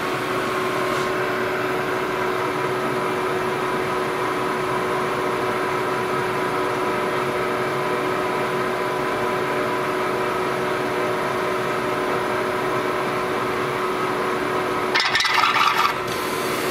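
ProtoTRAK CNC milling machine running its notching program, its spindle turning a spiral end mill with a steady whine over a noisy hum as the cutter passes through a stroker-crank clearance notch already cut in a cast-iron small-block Ford block. Near the end there is a louder, harsher noise lasting about a second.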